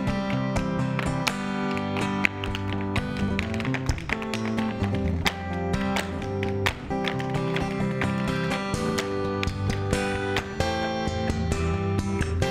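Quick, rhythmic clicks of two dancers' tap shoes striking a stage floor, over instrumental music with guitar.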